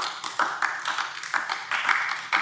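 Applause from a group of people: many overlapping hand claps that break out as a sentence ends and fade as speech resumes.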